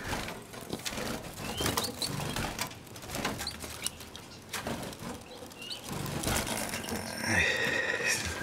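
Caged finches and canaries in a birdroom giving short, high, rising chirps every second or so, among scattered small clicks and fluttering. Near the end comes a louder run of bird calls.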